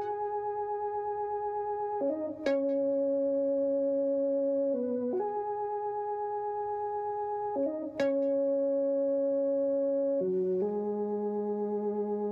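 Korg MS-2000 virtual-analog synthesizer playing a slow line of five held notes, each steady and about two and a half seconds long, with a brief step in pitch at each change.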